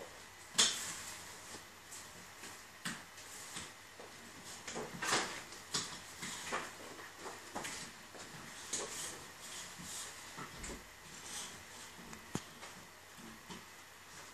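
Card puzzle pieces being handled on a wooden desk: irregular short rustles, slides and light taps as pieces are moved and fitted by hand, the sharpest about half a second in.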